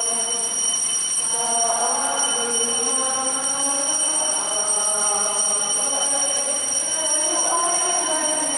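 Voices singing the Mass entrance hymn in church, with notes held for about a second each and moving slowly from one to the next, over a steady high-pitched electronic whine.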